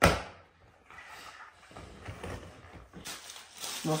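A single hollow plastic knock as the tipper bed of a large toy dump truck is let down shut, dying away within about half a second, followed by faint handling sounds.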